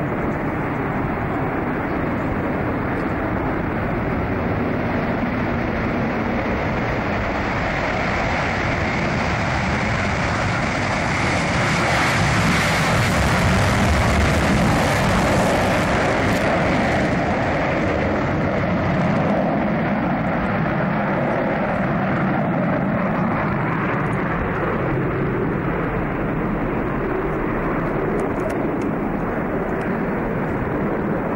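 Jet engine noise from a B-1B bomber's four turbofans as it moves along the runway. It swells to its loudest and brightest about halfway through as the aircraft passes, then fades back to a steady rumble.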